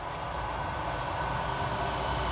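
Cinematic riser sound effect: an airy, noisy swell with a low rumble underneath, growing steadily louder.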